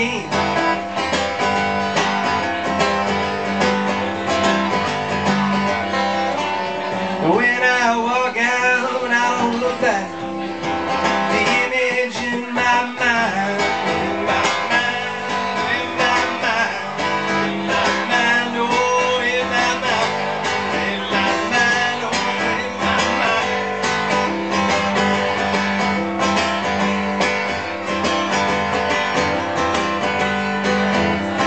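Acoustic guitar strummed steadily, played live.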